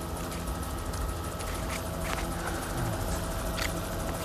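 Helicopter engine and rotor running steadily, a constant whine over a low rumble, heard from on board.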